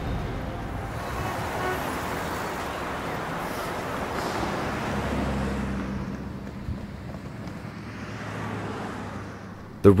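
City road traffic: a steady wash of passing-car noise that swells in the first half and fades toward the end, with a low engine hum in the latter half.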